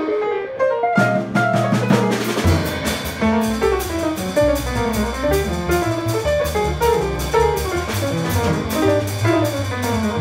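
Live small-group jazz: an archtop electric guitar plays running single-note lines over a drum kit with a steady cymbal pattern and upright bass. The bass is out for about the first second, then comes back in under the guitar.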